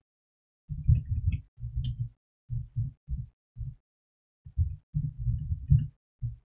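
Computer keyboard being typed on, heard mostly as muffled low thuds with faint clicks. The keystrokes come in several quick runs with short pauses between them.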